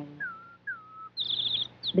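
Cartoon bird sound effect: two short falling whistled notes, then a quick, high twittering run of chirps.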